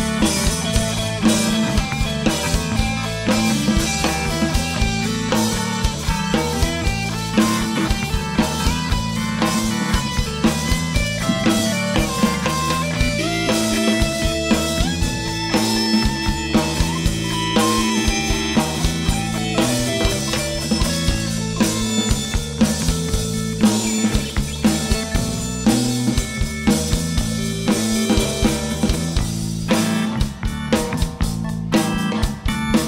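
Live rock band playing an instrumental passage: electric guitar leading with sliding, bent notes over a steady drum beat and bass.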